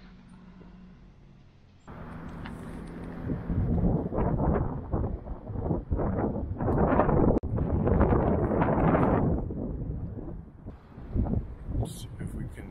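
Wind buffeting the microphone in irregular gusts, starting suddenly about two seconds in, loudest through the middle and easing near the end.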